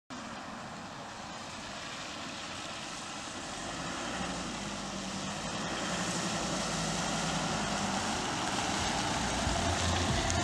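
A Volvo XC90 SUV approaching on a wet road: tyre hiss and a low engine note grow steadily louder as it nears.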